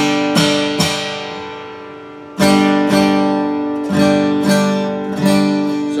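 Steel-string dreadnought acoustic guitar strummed hard with a flatpick, full chords ringing out. Three quick strokes open it and die away, then from about halfway a run of loud strums, roughly two a second.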